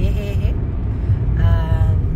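Steady low road rumble of a car driving, heard inside the cabin. A voice speaks briefly at the start and again near the end.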